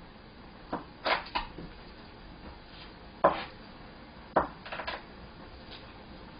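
Kitchen knife cutting a sheet of toasted laver (gim) into strips on a cutting board: about half a dozen sharp, separate knife strikes on the board at irregular intervals.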